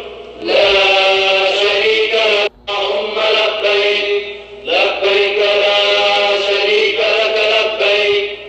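Religious chanting in long, held phrases of two to three seconds each, with brief breaks between them.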